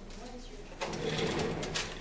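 Indistinct voices in a room, with a louder burst of mixed noise starting about a second in.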